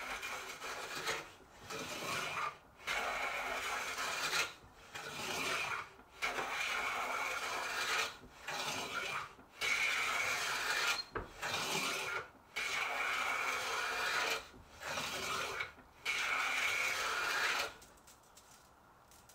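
Long hand plane shaving the edge of a wooden board: about a dozen strokes of a second or so each, with short pauses between as the plane is drawn back.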